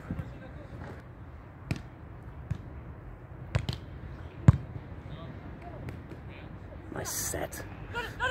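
A beach volleyball struck by players' hands and forearms during a rally: five or six short, dull hits spread over the first five seconds, the loudest about halfway through. A brief hissing burst follows near the end.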